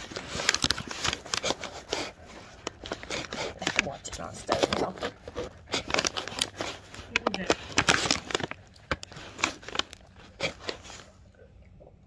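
Rustling and crinkling handling noise close to the microphone, a quick irregular run of clicks and scrapes that dies down about a second before the end.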